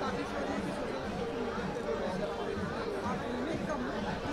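Background chatter of several people talking at once, steady and at a moderate level, with no single clear voice.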